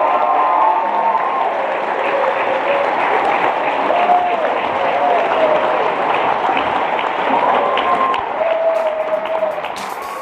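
Audience applauding steadily, with voices calling out in short pitched cries over the clapping.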